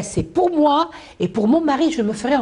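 Only speech: a person talking, with a brief pause a little past one second.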